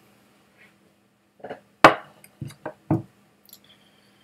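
A glass whisky bottle is set down on a table and glassware is handled. A sharp knock comes just under two seconds in, followed by several quieter taps and clinks over the next second.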